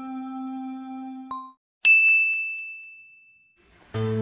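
A held, chime-like musical tone with a short struck note cuts off about a second and a half in. After a moment of silence a single bright ding rings out and fades over about a second and a half.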